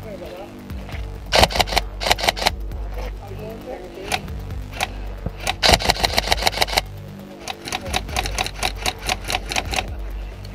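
Airsoft rifle fire: three bursts of rapid, evenly spaced shots, about a second in, around the middle, and through the last couple of seconds.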